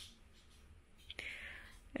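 Quiet room with a faint click about halfway through, followed by a soft breathy whisper lasting about half a second.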